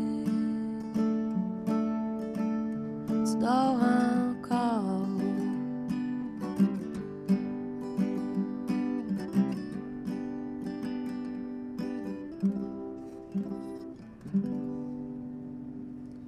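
Crafter acoustic guitar strummed in a slow, even pattern through the closing bars of a folk song, with a woman's voice singing one short drawn-out phrase about four seconds in. The strumming stops near the end and the last chord rings and fades.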